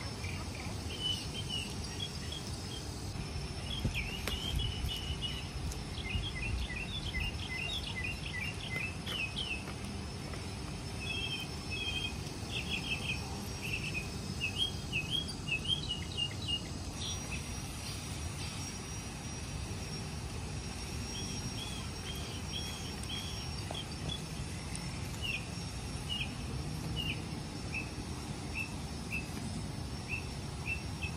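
Small birds chirping in quick repeated runs of short notes over a low, steady outdoor rumble. About halfway through, a steady high insect whine sets in and the chirping thins out.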